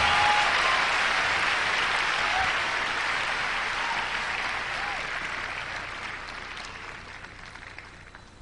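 Live audience applauding after the song, fading steadily away over several seconds.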